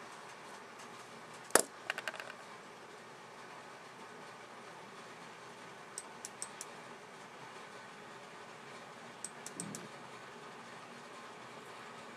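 Steady low room noise with a sharp click about one and a half seconds in, a few weaker clicks just after, and faint scattered ticks later on.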